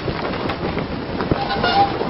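Storm wind blowing steadily, with a short pitched tone about a second and a half in.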